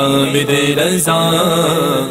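Male voice singing a devotional Urdu manqabat in a chant-like style, holding long melodic notes over a steady vocal drone.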